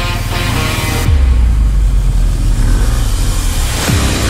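Background music, pulled back about a second in as the deep rumble of the BMW R1250 GSA's boxer-twin engine comes up loud.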